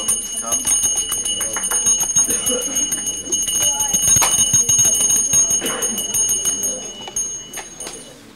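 A small handbell rung steadily with rapid clapper strikes, its high ring holding until shortly before the end, over people talking.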